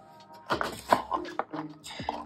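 Cardboard pen box and paper insert handled by hand: a few light taps and rustles as the box and manual are set down.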